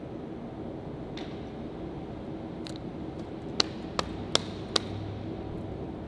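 Steady hum of a concrete parking garage, with four sharp clicks or taps in quick succession a little past halfway through.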